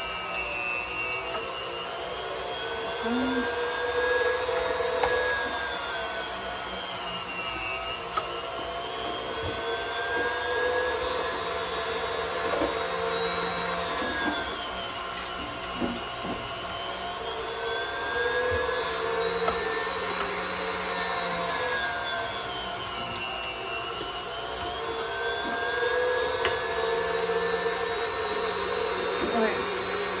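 Stand mixer running a meat grinder attachment, grinding cooked ham. The motor's pitch sags and recovers about every seven to eight seconds, and the loudness swells in step.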